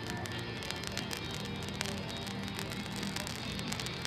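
Ground fountain firework burning, a steady hiss of sparks with many scattered sharp crackles, over background music.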